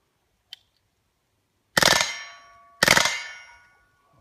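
Two shots from an M16-type rifle in .22 LR, suppressed with a SilencerCo Spectre II, each paired with a hit on a steel plate target that rings out in several tones, about a second apart. A faint sharp click comes about half a second in.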